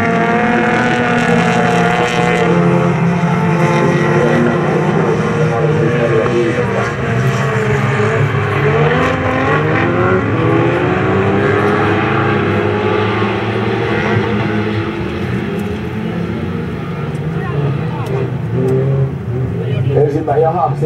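Several folk-race cars racing on a circuit, their engines revving up and down over one another as the pack works through the corners.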